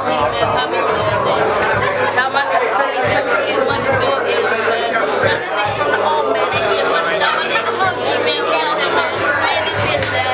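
Several people talking over one another, with music playing underneath.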